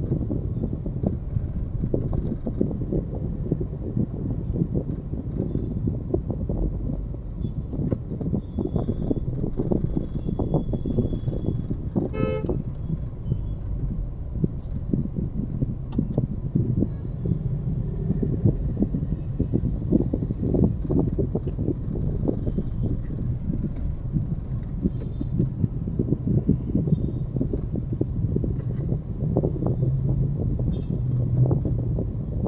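Road traffic heard from inside a car crawling in congested traffic: a steady low rumble of engines and tyres. A vehicle horn gives one short toot about twelve seconds in.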